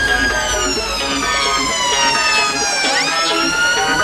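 UK ambulance siren wailing as it passes: a long, slow fall in pitch, then a quick rise about three seconds in. Music plays underneath.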